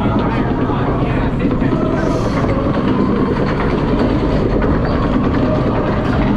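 Splash Mountain log-flume boat climbing a chain lift in a dark tunnel: a steady, dense mechanical clatter of the lift chain and rollers under the log.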